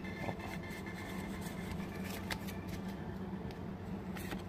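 Trading cards being handled, faint rustling and a few light clicks as the stack is gripped and shifted, over a steady low hum.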